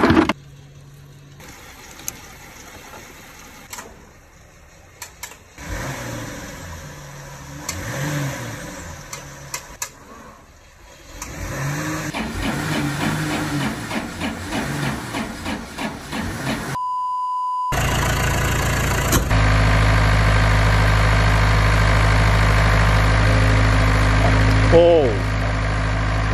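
Backhoe's diesel engine, jump-started from a car, running at a steady idle through the last third, just after a short beep. Before it starts there are only faint handling noises and voices.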